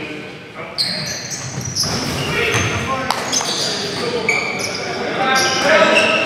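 Live basketball game in a large gym: sneakers squeaking on the court floor and a basketball bouncing, with players' voices calling out in the echoing hall.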